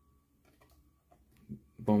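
Near silence broken by a few faint clicks of trading cards being flipped and handled, the loudest about one and a half seconds in; a man's voice starts near the end.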